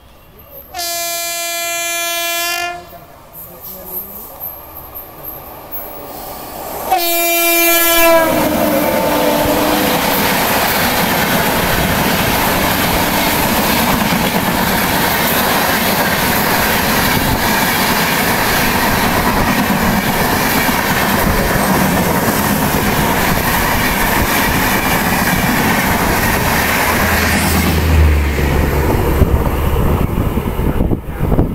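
Horn blasts from WAP7 electric locomotives: a steady blast of about two seconds starting about a second in, then a second blast about seven seconds in whose pitch falls as the oncoming locomotive passes. For about twenty seconds after that, the oncoming express's coaches rush past on the adjacent track: a loud, steady rattle of wheels, heard from the open door of the moving train.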